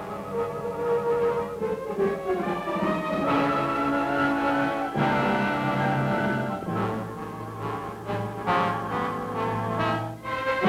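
Orchestral film score led by brass, playing held chords that change every couple of seconds.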